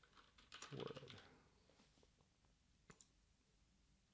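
A few faint computer keyboard keystrokes and one sharp click, about three seconds in, against near silence while a typo in a text label is retyped.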